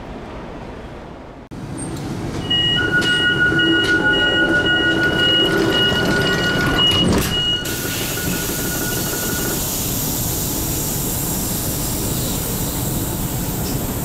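Commuter train running, heard from inside the passenger car by the doors. For about five seconds a high, steady whine or squeal of several tones sits over the running noise, then it gives way to a steady rumble and hiss.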